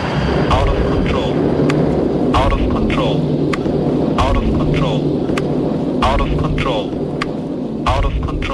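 Electronic DJ track: sweeping pitch-glide effects recur about every one to two seconds over a low tone that pulses roughly every two seconds.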